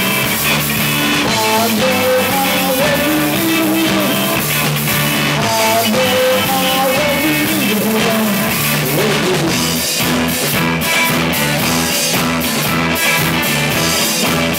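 Live rock band playing electric guitars and drum kit, with a wavering melody line over the chords for most of the first nine seconds. From about ten seconds in, the cymbals come forward.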